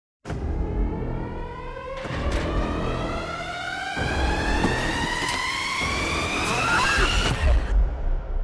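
Trailer sound design: a rising tonal swell that climbs steadily in pitch for about seven seconds over a low rumble, punctuated by a few sharp hits, then cuts off suddenly just before the end.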